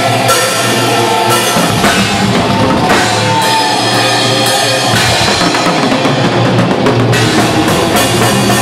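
Death metal band playing live, heard from close to the drum kit: drums with bass drum and cymbals over distorted guitars and bass guitar, loud and unbroken.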